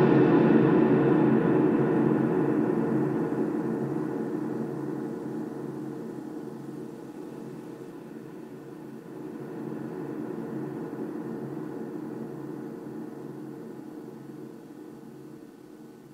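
Low ambient drone of several held tones sounding together, slowly fading out, with a brief swell about nine seconds in before it dies away.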